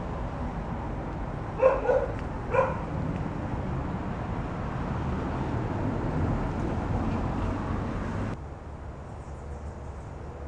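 A dog barks twice, two short barks less than a second apart, about a second and a half in, over a steady low background rumble.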